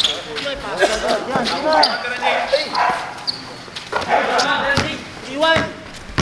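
Basketball bouncing on a hard court, with sharp knocks of the ball amid players' shouts and calls during play.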